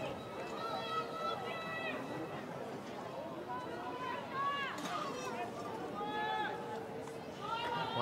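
Distant, fairly high-pitched voices calling out across an open football ground, several overlapping in short shouts, over a steady outdoor background hum.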